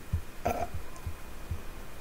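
A pause in a man's talk: a short hesitant 'uh' about half a second in, over faint low thumps and room noise.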